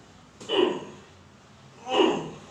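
A man's short vocal sounds, twice, each sudden and then fading, coming in rhythm with hand pressure pushed down on a lower back.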